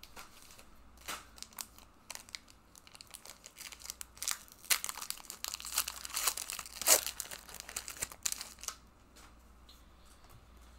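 Foil wrapper of a Pokémon trading card booster pack crinkling and being torn open by hand: irregular crackles, loudest about five and seven seconds in.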